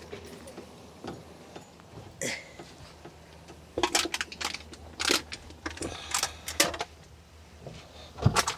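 Scattered clicks, knocks and rustles of someone climbing into a truck cab across the seat, with a cluster of sharper knocks about halfway through.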